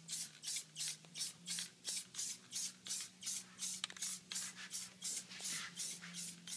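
Aerosol spray-paint can hissing in short, evenly spaced bursts, about three a second. A faint steady low hum runs underneath.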